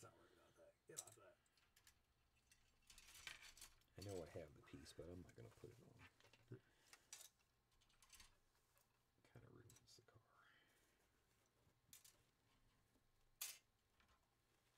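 Near silence with a few faint clicks and taps of plastic model-kit parts being handled, the sharpest one near the end. A brief low mumble of a voice about four seconds in.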